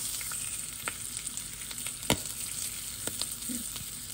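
Abalone and garlic cloves sizzling in melted butter in a cast-iron skillet: a steady frying hiss with frequent small crackles and one sharper click about two seconds in.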